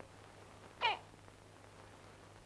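A baby's single brief whimper about a second in, high and falling in pitch, over a faint steady hum.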